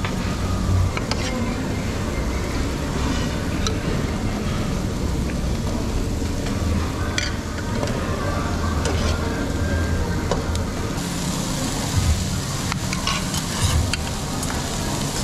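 Busy Korean BBQ restaurant din: a steady sizzle over a low extractor hum, with scattered light clicks of metal chopsticks against metal bowls.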